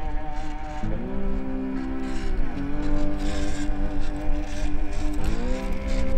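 Whine of a WPL B36-3 1/16-scale RC truck's small electric motor and gearbox under load while towing a trailer. The pitch rises about a second in, drops around two and a half seconds, and climbs again near the end as the throttle changes.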